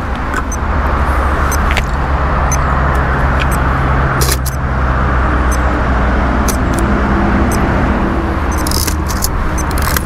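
Steady motor vehicle engine and road noise: a low, even hum under a rushing haze, with a few light clicks over it.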